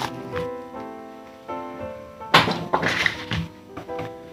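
Background music of soft sustained chords, then about two and a half seconds in a short burst of rustling and a thunk as the shrink-wrapped book of scratch-off lottery tickets is unwrapped and set down.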